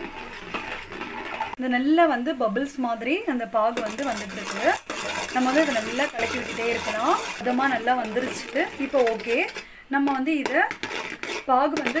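Steel spoon clinking and scraping against an aluminium pot while stirring hot jaggery syrup, with a voice talking over it for most of the time.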